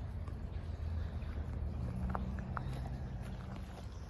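Low, steady outdoor background rumble with a faint hum, and a couple of faint short ticks about two seconds in.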